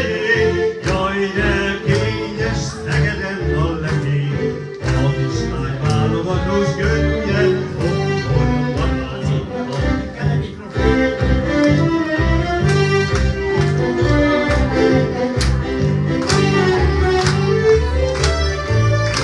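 Hungarian magyar nóta accompaniment played on electronic keyboards, an instrumental passage with a melody over a steady, repeating bass and beat.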